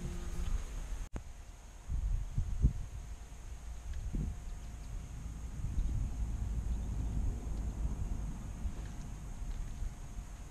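Wind buffeting the microphone on an open riverbank, an uneven low rumble that swells and eases in gusts, with a brief break in the sound about a second in.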